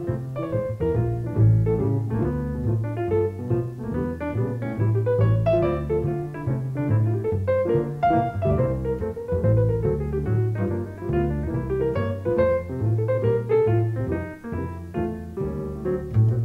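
Jazz piano and double bass duo playing: a grand piano plays chords and a melody over a bass line on the double bass.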